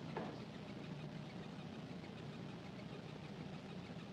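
Quiet room tone: a steady low hum with faint, indistinct background sounds.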